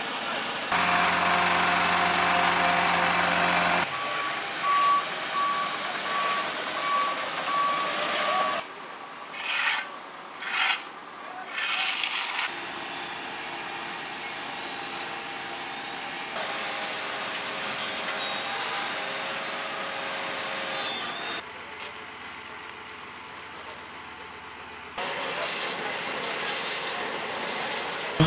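Asphalt-paving machinery working: the diesel engines of a Vögele paver and a dump truck running steadily, heard in several cut-together takes. In one take a back-up alarm beeps repeatedly for a few seconds. In the middle come some short scraping and knocking bursts.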